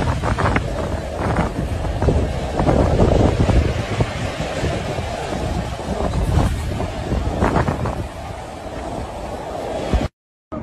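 Storm noise: wind gusting on the microphone over the steady rush of floodwater running through a street. It eases a little near the end.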